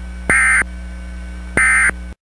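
Emergency Alert System end-of-message signal from NOAA Weather Radio: two short bursts of warbling digital data tones (the SAME "NNNN" code), about 1.3 seconds apart, over a steady broadcast hum. The bursts mark the end of the alert message.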